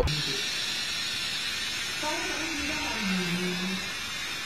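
A steady hiss with a faint voice speaking briefly in the second half.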